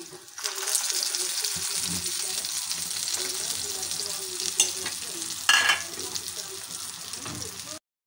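Chicken mince kebabs sizzling in shallow oil in a frying pan: a steady frying hiss that starts about half a second in. Two sharp clicks around the middle, the second with a brief louder crackle; the sound cuts off suddenly just before the end.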